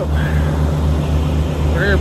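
Semi truck's diesel engine idling close by: a steady low rumble that pulses evenly a few times a second.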